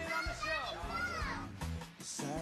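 A young child's high-pitched voice over background music.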